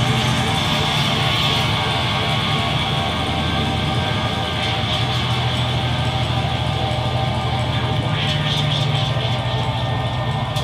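A live noise-rock band playing loud and steady: a dense wall of distorted sound from keyboards, electronics and bass guitar, with a low droning bass and held tones and no clear beat.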